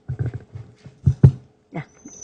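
Handling noise from a gooseneck lectern microphone being bent into position by hand: low thumps and rubbing, with two sharp knocks about a second in.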